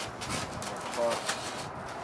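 Styrofoam packing sheet rubbing and scraping against a cardboard box as it is handled, with one short pitched note about a second in.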